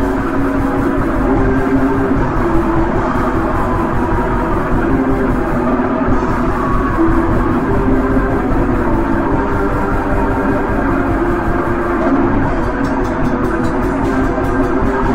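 Raw black metal: a dense, lo-fi wall of distorted guitars and drums, with held chords that shift every second or two and no vocals.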